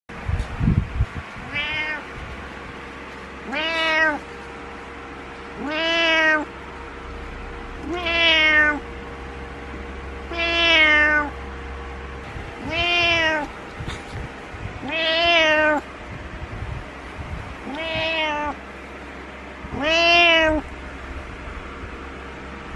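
Orange-and-white domestic cat meowing insistently, nine long meows about two seconds apart, each rising then falling in pitch: calls demanding that its owner get out of bed.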